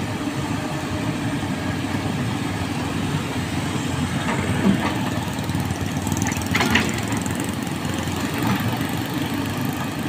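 Komatsu hydraulic excavator's diesel engine running steadily as it digs sediment out of an irrigation canal, with two brief sharp knocks a little after the middle.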